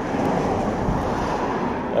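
Wind blowing steadily across the microphone and through a field of maize.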